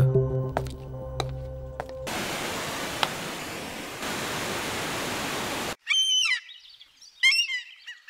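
Soft film music with sustained notes trails off, then a steady rush of flowing stream water that cuts off abruptly. Birds then chirp in two short bursts of quick, falling calls.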